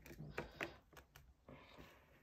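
Faint handling of thick cardboard puzzle pieces: pieces pushed and pressed together by hand, with a couple of small knocks in the first second and a few light ticks after.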